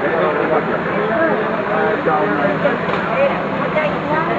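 Several people talking and calling out at once, their voices overlapping, over a steady low background rumble.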